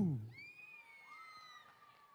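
The host's amplified voice trails off. Then comes a faint, high-pitched, drawn-out squeal, a young person's cry from the audience, that lasts about a second and a half.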